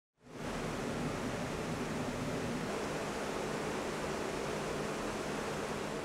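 Steady rushing noise with a faint low hum beneath it, fading in at the start and dropping off just after the end.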